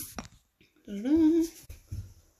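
A woman's brief hummed vocal sound, about a second in, rising in pitch and then held for about half a second. A faint click comes just before it.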